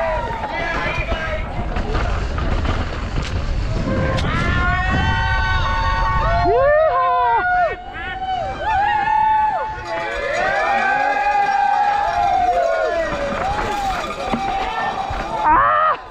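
Trailside spectators shouting and cheering, several voices whooping over one another, building from about four seconds in. Wind and rumble from the mountain bike descending the trail run underneath, strongest at the start.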